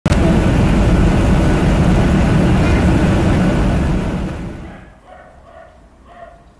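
Loud, steady roar of an aircraft in flight, heavy in the low end, fading out between about four and five seconds in.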